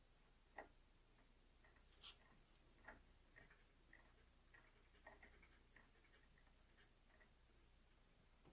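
Near silence broken by faint, scattered small clicks and ticks as an air pressure assembly is screwed by hand into a Magma Star Lube-Sizer, with metal parts turning and knocking against each other.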